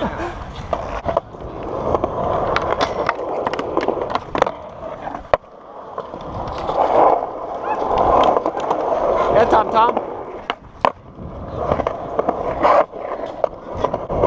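Skateboard wheels rolling on smooth concrete, a continuous rumble that swells and fades as the board picks up and loses speed through the transitions, with frequent sharp clicks and knocks from the board.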